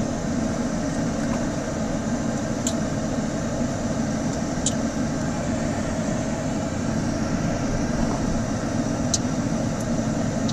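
Steady cabin noise of a car driving slowly: engine and tyre noise heard through closed windows, with a few faint ticks.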